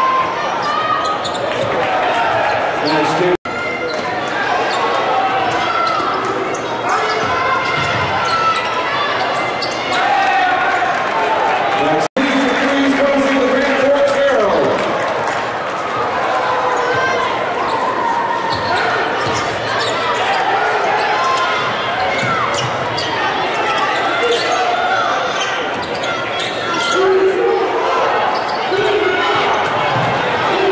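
Arena sound of a basketball game in progress: crowd voices throughout, with a basketball dribbling on the hardwood court. The sound cuts out for an instant twice, about three and twelve seconds in.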